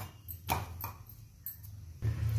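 A few light clicks and knocks, about four in two seconds, from a wooden rolling pin working roti dough on a rolling board, over a low steady hum.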